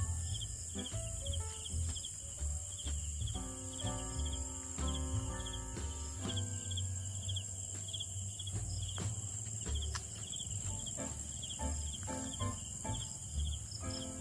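Crickets chirping in a steady, regular rhythm, with a constant high-pitched insect trill behind them and a low rumble underneath.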